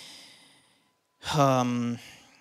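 A man's breath drawn in close to a handheld microphone, followed a little over a second later by a short voiced sigh with a slightly falling pitch.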